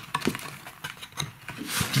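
Thin cardboard box being handled: light clicks and taps of the paper flaps, then the inner box sliding out of the cardboard sleeve with a rubbing hiss near the end.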